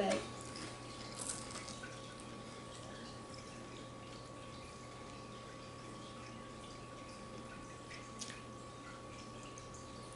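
Quiet room tone with a steady faint electrical hum and a few faint clicks and taps, about a second in and again near the end.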